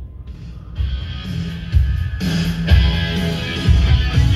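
Rock music with guitar playing through the 2005 Dodge Dakota's stereo, coming up loud about a second in, with heavy bass beats roughly once a second.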